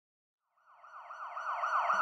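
Siren sound effect fading in about half a second in, a fast rising-and-falling wail that repeats about four times a second and grows louder.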